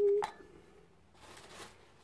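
A woman's voice trails off on a held word at the start, followed by a single light click and, a little later, a faint brief rustle as objects are handled.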